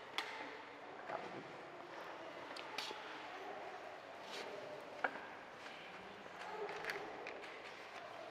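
Quiet ambience in a large church: scattered small clicks and taps, the sharpest about five seconds in, over faint murmuring.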